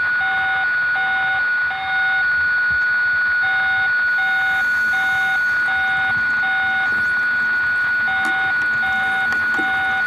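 Electronic signal tones from a diver-tracking receiver: a steady high tone with short beeps repeating over it, about two a second, in runs of five or six separated by brief pauses.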